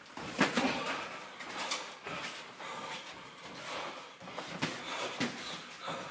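Boxers sparring: scattered soft thuds and scuffs from gloved punches and footwork on the ring canvas, the loudest a little under half a second in, with more near the end.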